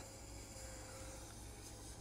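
Faint, steady sizzling of a beaten egg cooking in an electric egg roller, with a low hum underneath.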